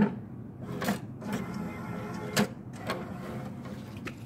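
Criterion II urine test-strip analyzer running its strip-transport motor, drawing the reagent dipstick off the loading tray into the reader. It makes a steady whir with a few sharp clicks in the first half.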